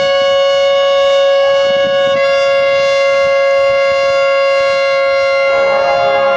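A marching band's brass section holding one loud sustained chord. About two seconds in the upper notes shift, and lower parts come in near the end.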